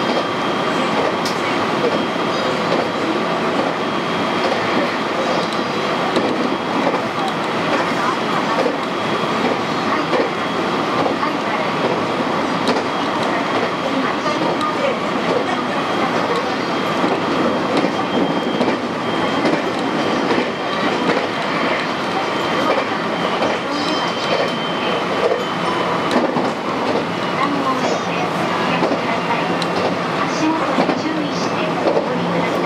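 Running noise of a JR West 223 series electric train heard from inside the driver's cab: a steady rumble of wheels on the rails, with a thin high whine that fades out past the middle.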